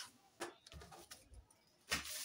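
Mostly quiet handling of a brown-paper sewing pattern on a table, with one light sharp tap about half a second in and faint low rustling and bumps.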